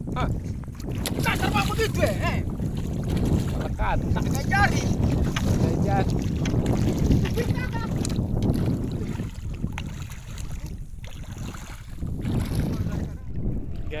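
Wind buffeting the microphone over the swish and splash of shallow sea water as a person wades through it.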